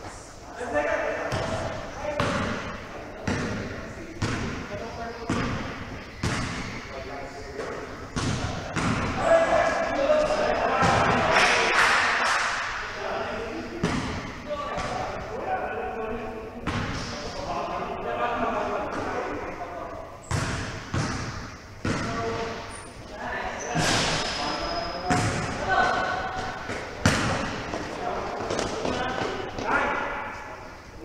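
Basketball bouncing repeatedly on an indoor gym court, with sharp thuds throughout, as players' voices call out across the hall.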